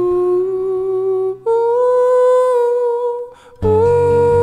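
Male voice holding long wordless notes over a softly picked acoustic guitar. The voice steps up to a higher note about a second and a half in, breaks briefly near the end, then comes back on a new note.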